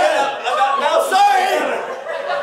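Loud, wordless yelling from a performer, its pitch swooping up and down, over crowd noise from the audience.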